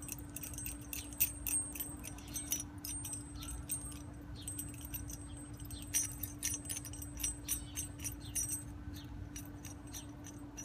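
Quick metallic clicking and clinking of nuts and washers being threaded by hand onto a threaded rod, in two runs of rapid clicks with a short pause between.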